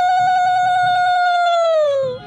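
Conch shell (shankha) blown in one long, steady, loud note that sags in pitch as it ends near the close.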